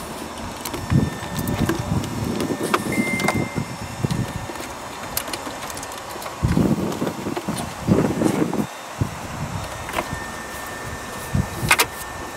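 Rustling and rubbing of cables and a wiring harness being handled and fed through an open car dashboard, with a few sharp clicks and a louder stretch of rubbing past the middle.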